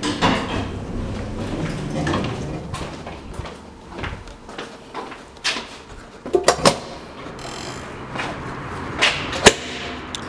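Elevator doors sliding open with a mechanical rumble over the first few seconds, then several sharp knocks and thumps, the loudest near the end.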